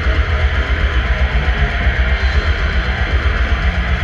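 A death metal band playing live through a PA: distorted electric guitars, bass and drums, loud and dense with a heavy low end, heard from within the crowd.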